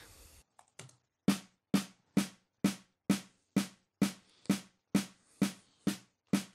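Snare drum hits played back alone from a multitrack drum recording. About a second in, a steady run of single strikes begins, about two a second, with no kick or cymbals audible.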